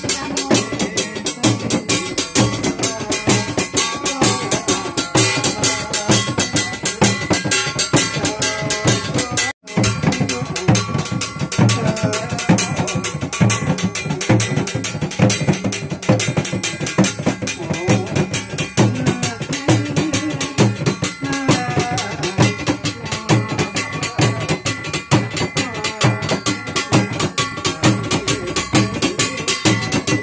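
A shaman's frame drum beaten with a stick in a fast, steady rhythm of strikes. The sound cuts out for an instant about a third of the way in.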